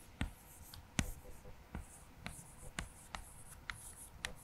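Chalk writing on a chalkboard: a run of short, sharp chalk taps and faint scratches at irregular intervals as words are written.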